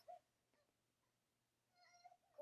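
Near silence: room tone, with a brief faint pitched voice-like sound at the very start and another beginning near the end.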